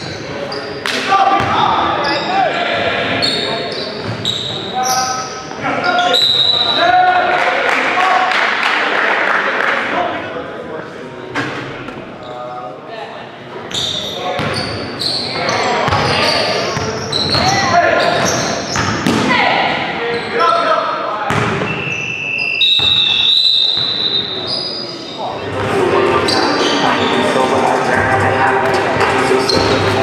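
Indoor basketball game sounds in an echoing gymnasium: a basketball bouncing on the hardwood floor, sharp sneaker squeaks, and players' voices calling out on court.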